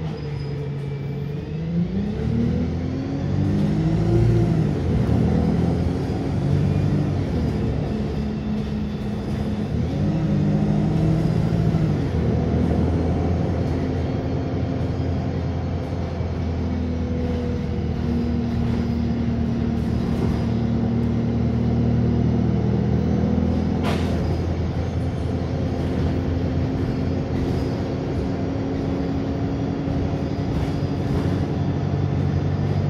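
Wright StreetLite single-deck bus heard from inside the saloon: its four-cylinder diesel engine pulls away, the note rising and dropping through three gear changes over the first twelve seconds, then settles into a steady cruising hum. A single sharp click comes about 24 seconds in.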